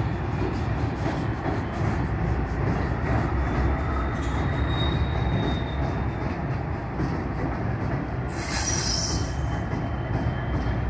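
Light power of diesel locomotives crossing a steel truss railroad bridge: a steady low rumble of engines and wheels, with a quick run of clicks from the wheels over rail joints. A faint thin wheel squeal comes in around five seconds, and a short, sharp high squeal follows near nine seconds.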